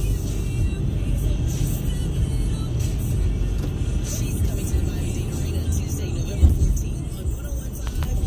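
Steady road and engine rumble heard inside a moving car's cabin, with one short low thump about six and a half seconds in.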